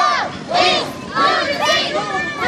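A group of marchers chanting and shouting together in short, high-pitched calls about twice a second, several voices overlapping.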